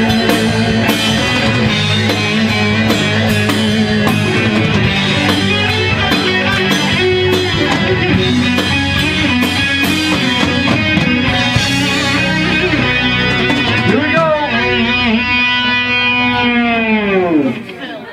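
Live rock band with electric guitar, five-string bass guitar, drums and keyboards playing the close of a song. The full band plays for about twelve seconds, then a held final chord slides down in pitch, dives steeply and cuts off just before the end.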